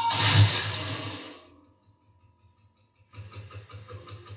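Film soundtrack played through a TV: a loud rushing burst that fades away within about a second and a half, a pause of near silence, then a fainter, regular pulsing sound starting about three seconds in.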